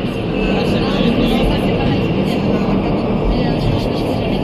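Steady vehicle running noise with indistinct voices in the background.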